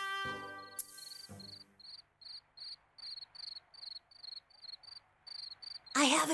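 A music cue fades out over the first second or so, then crickets chirp steadily as night ambience: short, high, evenly spaced chirps, about four a second.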